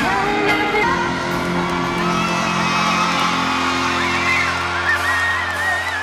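Live pop music from a band on stage: held keyboard and bass chords under a sung melody that glides and wavers.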